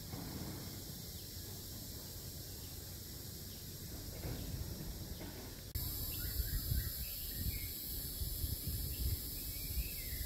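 Outdoor ambience: a steady high insect drone with a few faint bird chirps, and gusts of wind rumbling on the microphone. The sound steps up suddenly about six seconds in.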